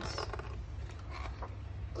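Soft paper rustle of a picture-book page being turned, over a steady low hum.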